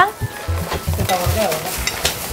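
Background music for a TV comedy, with a low bass note repeating in short pulses, over a steady hiss.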